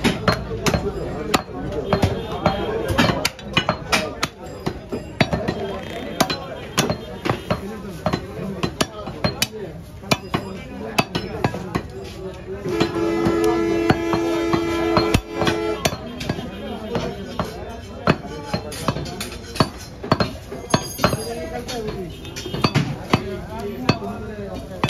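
Heavy butcher's cleaver chopping beef on a wooden log block, in sharp irregular chops. Background voices, and a steady held tone for about three seconds in the middle.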